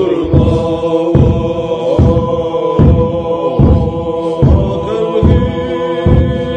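Background music: a held, chanted vocal line with slow pitch glides over a steady low beat about every 0.8 seconds.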